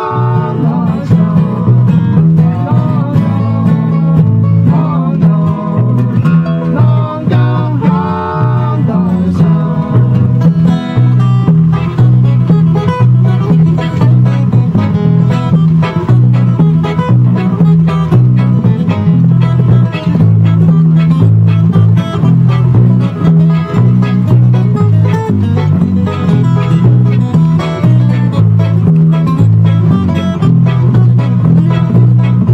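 Live acoustic bluegrass band playing an instrumental passage. A fiddle melody wavers over flatpicked acoustic guitar and banjo, and an upright bass keeps a steady two-note bounce beneath.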